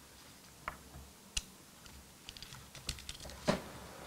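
Scattered light clicks and taps as fingers handle a small plastic miniature model camera and its metal strap rings, with a louder knock near the end.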